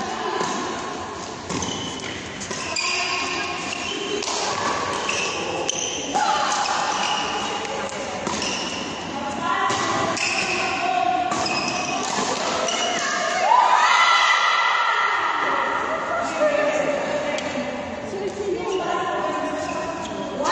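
Badminton doubles rally: repeated sharp racket strikes on the shuttlecock and players' footfalls on the court, with voices in the hall.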